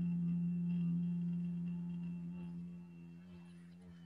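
A man's voice chanting a long, low "Om" held on one steady note, loudest at the start and slowly fading toward the end.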